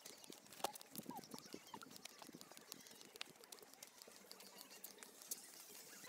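Faint footsteps crunching on a dry dirt path as people walk, heard as many small irregular clicks.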